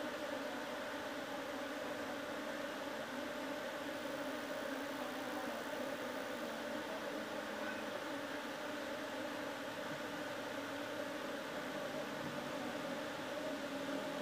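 A swarm of Asian honey bees (Apis cerana) buzzing in and around an open bucket: a steady, even drone.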